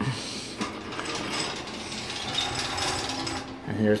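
Rapid, dry clicking and rattling of a box fan on its metal stand as it is handled and turned round, lasting about three and a half seconds.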